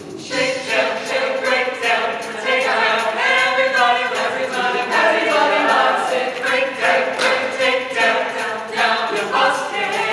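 Mixed-voice show choir singing in harmony.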